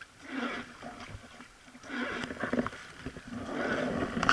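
Wooden river boat being rowed: oar strokes repeating about every one and a half seconds, each with a splash and swirl of water.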